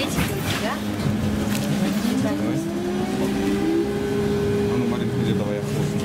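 Trolleybus traction motor whining as the vehicle accelerates, heard inside the passenger cabin. The whine rises in pitch about two seconds in and then holds steady, over a constant low hum and road noise.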